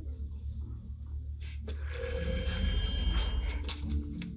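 Film soundtrack sound design: a deep low rumbling drone that swells in the second half, joined about halfway by high, steady ringing tones and a few short clicks.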